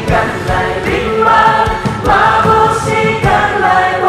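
A group of singers singing together into microphones over amplified backing music with a steady beat, holding long notes.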